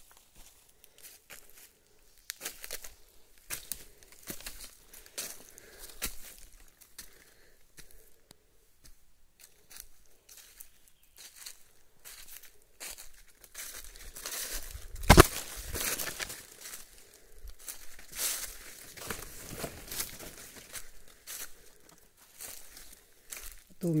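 Footsteps crunching through dry fallen leaves and brushing through bamboo and undergrowth, making irregular crackling and rustling. One sharp, loud crack comes about fifteen seconds in.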